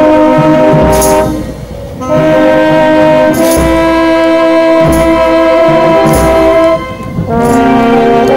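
Brass band playing a slow processional march: held brass chords in long phrases, with a bass drum and cymbals struck together every second or two. The music breaks off briefly twice, once about a second and a half in and once near the end.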